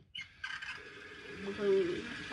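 A sink tap turned on for hot water, running steadily from about half a second in.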